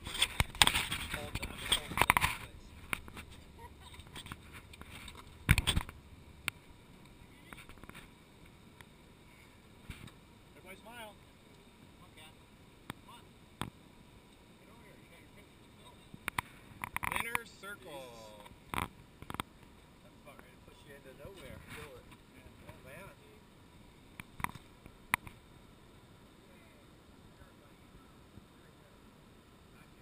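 Faint, intermittent voices over a quiet background. There is a burst of rustling noise in the first two seconds and a single sharp knock about five and a half seconds in.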